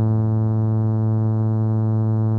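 Synthesizer music: one sustained chord held steady, with no drums or percussion.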